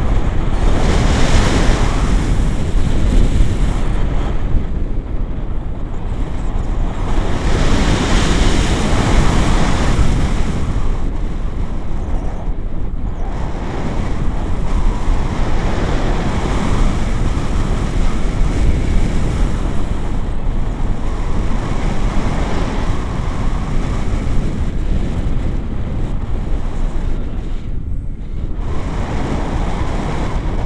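Wind rushing over the action camera's microphone in paraglider flight: a loud, continuous buffeting that swells and eases in gusts.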